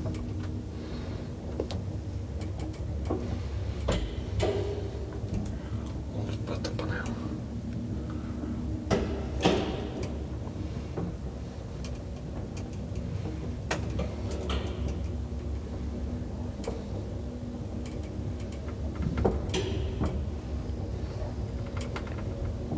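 Old Hissen AB elevator car travelling in its shaft: a steady low hum and rumble, with a sharp click or knock every few seconds.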